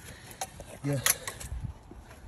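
A man's voice saying "yeah", with a few short, sharp clicks around it; the loudest click comes just after the word.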